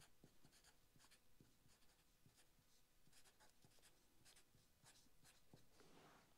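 Very faint handwriting: short scratching pen strokes, about two a second and irregular, against near silence.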